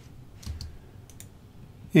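A few faint computer mouse clicks: a soft thump about half a second in, then two or three short, sharp clicks a little after a second.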